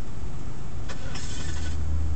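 Car engine idling steadily, heard from inside the cabin, with a single click about a second in followed by a brief hiss.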